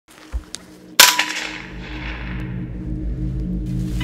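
A single gunshot from a shouldered hunting gun about a second in, with a ringing echo that dies away over about half a second. Two faint clicks come just before it.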